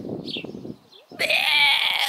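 A woman laughing breathily, then one loud, drawn-out, high-pitched cry a little over a second in, held for about a second with its pitch rising and falling.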